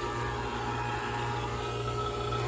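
Fieldpiece refrigeration vacuum pump running steadily with a low, even hum while evacuating a heat pump lineset.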